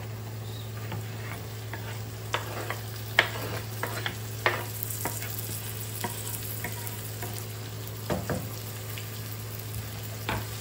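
Onion and garlic sizzling in oil in a non-stick frying pan, with a wooden spoon knocking and scraping as chopped tomatoes are pushed off a wooden board into the pan. A run of knocks comes a couple of seconds in, and a heavier double knock near the end.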